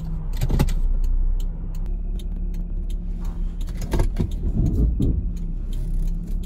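A 1995 Toyota Supra SZ's naturally aspirated 3.0 L inline-six running steadily under way, heard from inside the cabin with road noise. A few light clicks come through over the hum.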